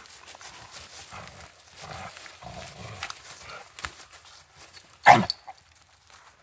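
Two Rottweilers playing over a stick: low play growls in the first few seconds, then one loud, short bark about five seconds in.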